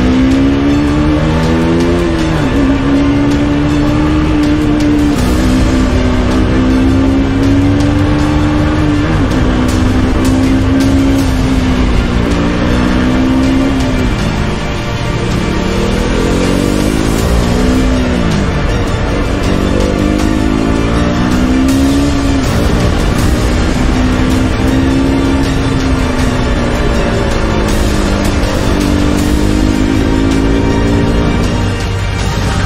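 KTM RC 200's single-cylinder engine running under way, its pitch holding steady at cruise and several times rising as it accelerates, then dropping at a gear change. Music plays over it.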